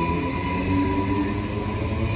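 Queensland Rail electric multiple-unit train moving past the platform close by: a steady rumble from the wheels on the rails, with the whine of its electric traction motors held on steady tones.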